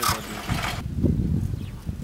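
Garbage tipper truck's engine running with a low rumble, with a rushing hiss over it during the first second.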